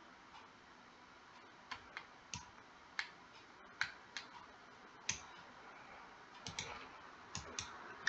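Faint, irregular clicking of a computer mouse, about a dozen clicks spaced unevenly.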